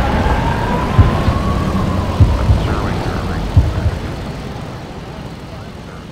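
Cinematic outro sound design: a low rumbling drone under a tone that rises and then holds, with three or four deep thuds, fading out steadily toward the end.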